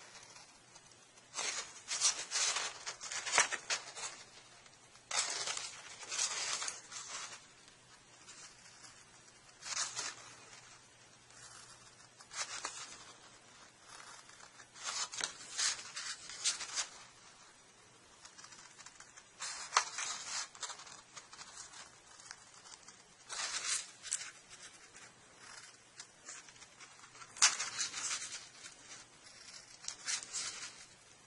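Scissors snipping through paper in short runs of quick cuts, about eight runs spaced a few seconds apart, as small notches are trimmed along the edge of a printed paper part.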